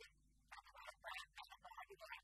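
A man speaking steadily at a low level, his words broken into quick syllables; the speech is not in English.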